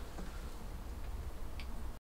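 Quiet room tone with a steady low hum and one faint click near the end.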